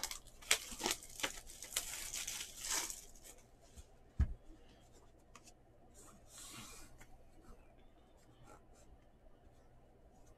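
A trading-card box being torn open by hand: about three seconds of ripping and crackling of wrapper and cardboard with sharp clicks. Then a single knock about four seconds in, and a short rustle a couple of seconds later.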